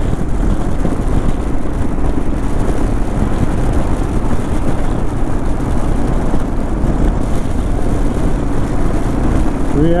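Steady rush of wind and wet-road noise from a Royal Enfield Himalayan motorcycle riding at highway speed in rain, with its single-cylinder engine running underneath.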